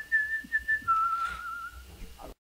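A person whistling through pursed lips: a high note held for most of a second, then a step down to a lower, slightly wavering note that fades out.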